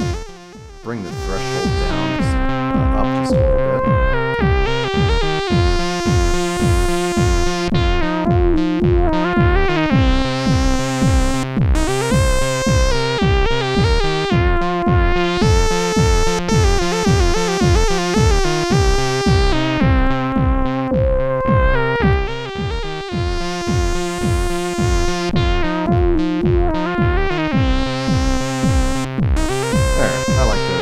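Looped electronic track played on a MIDI-modded Korg Monotron analog synthesizer, with a steady kick pulse, a sustained bass line and a high lead whose filter cutoff sweeps up and down, heard through a sidechain compressor on the master mix. The level drops briefly about half a second in, then the loop carries on.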